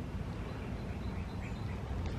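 Outdoor ambience: a steady background hiss with a low rumble, and a few faint bird chirps.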